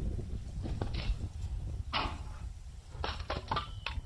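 Wind on the microphone with a few short sharp sounds as a paracord sling is thrown at a hanging metal weight plate. The loudest comes about halfway through, and a cluster of sharp knocks in the last second goes with the plate being struck and swinging on its cable.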